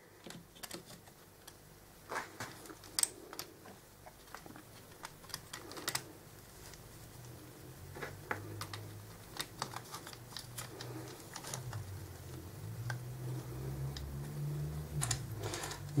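Small irregular clicks and taps of plastic RC car parts being handled and pushed into place on the front drivetrain of a Tamiya TT01, over a faint low hum.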